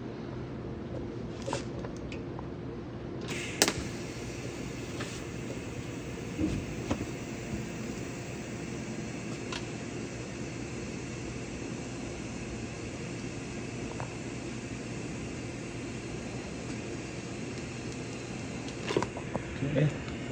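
TIG welding arc on stainless steel: a steady hiss over a constant low hum, with a few faint ticks and a sharper one about three and a half seconds in.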